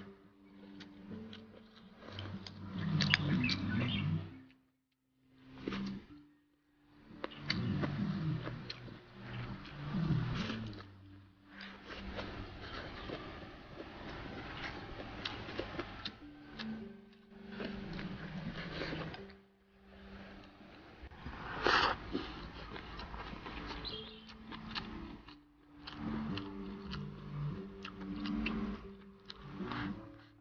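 Close-up eating sounds: chewing and slurping mouthfuls of rice with spicy stir-fried chicken giblets, in irregular bursts with short pauses, and occasional sharp clicks of chopsticks.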